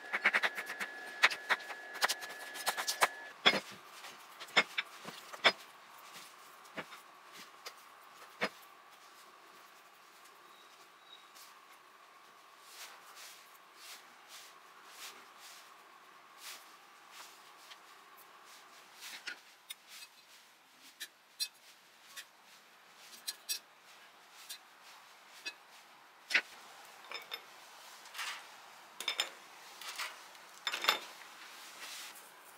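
A chef's knife dicing bell peppers on a wooden cutting board: a quick series of sharp knocks of the blade on the wood over the first five or six seconds. After that come scattered light taps and clicks.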